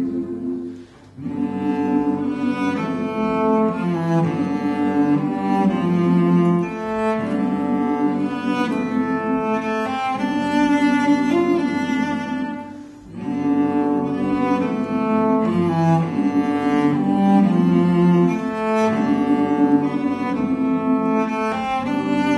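A cello bowed through a melody of sustained notes. It dips briefly about a second in and again about thirteen seconds in, where a new phrase begins.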